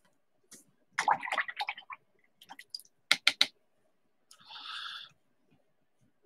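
A paintbrush being picked up and wetted to blend oil pastel crayon marks: a rustle about a second in, three sharp clicks a little after three seconds, then a short swish near the end.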